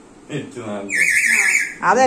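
A parrot's high, warbling screech lasting about a second in the middle, between bursts of people talking.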